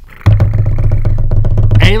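A drum roll: a loud, fast, even run of strokes with a deep, booming body. It starts about a quarter second in and lasts about a second and a half, ending as a voice comes in.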